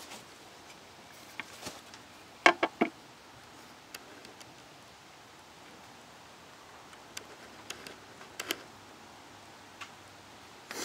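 Scattered sharp clicks and knocks over a faint steady hiss, the loudest a quick run of three about two and a half seconds in, with more near the end.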